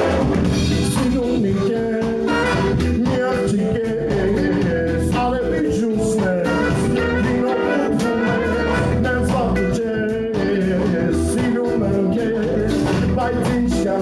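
Live reggae-ska band playing upbeat music: drums, bass, guitar and keyboards under a horn section of trumpet, trombone and saxophone, with a male singer.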